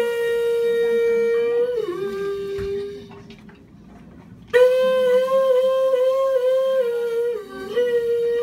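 A small hand-held wind instrument played in slow, long-held notes with a slight waver, each phrase stepping down in pitch near its end. It breaks off about three seconds in and comes back in about a second and a half later.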